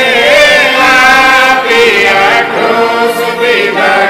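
Singing of a Mundari-language Good Friday song, a Christian hymn about the suffering and death of Jesus, with held notes that bend in pitch.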